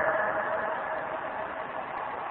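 Steady background noise in a pause between a preacher's sentences: an even hiss with a faint hum in a bandwidth-limited recording, fading slightly.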